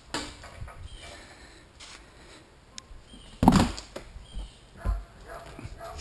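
Rear galley hatch of a homemade teardrop camper being unlatched and swung open: a few light clicks and knocks, then a loud thump about three and a half seconds in and a smaller one about a second later.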